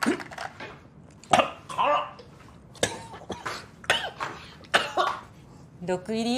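A man coughing hard in a series of about six coughs, choking on a mouthful of food made hot with extra jalapeño.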